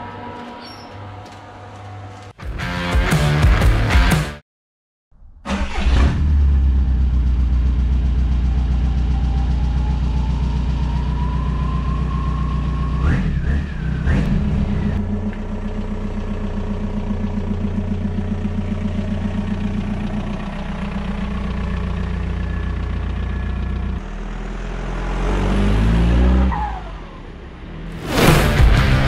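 Volkswagen Polo 16V's four-cylinder petrol engine starting after a brief silence and running steadily, with the revs rising and falling near the end. A short stretch of music plays in the first few seconds.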